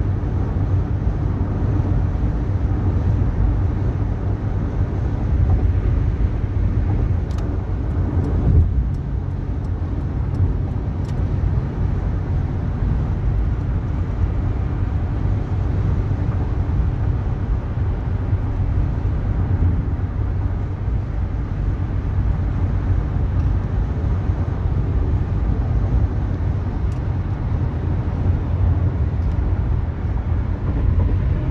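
Steady road and engine rumble of a car driving on a freeway, heard from inside the car.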